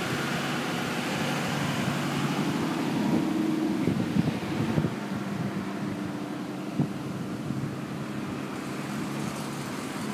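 Steady low mechanical hum under wind buffeting the microphone, gustier around the middle, with a single knock about seven seconds in.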